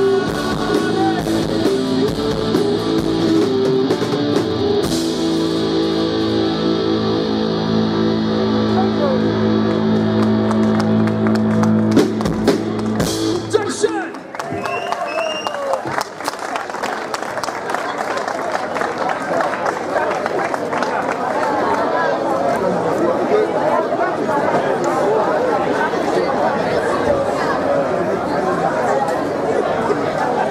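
A live rock band with electric guitars, bass and drums finishes a song, ending on a long held chord that cuts off abruptly about thirteen seconds in. Crowd chatter and noise follow.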